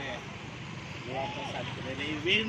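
A steady hiss of outdoor background noise, with a person's voice speaking briefly and indistinctly about a second in.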